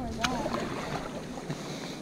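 Sit-on-top kayak sliding off a carpeted launch ramp and onto the creek water, a steady noisy wash of hull on ramp and water, with one faint click about a quarter second in.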